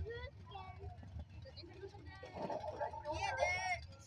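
Indistinct nearby voices chatting, with a high-pitched voice about three seconds in, over a low steady rumble.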